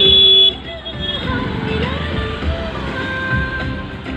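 A vehicle horn sounds loudly for about half a second at the start, over background music and traffic rumble.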